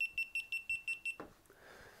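GoPro Hero3 camera beeping as it powers off: a rapid run of about seven short, high beeps at one pitch, lasting just over a second.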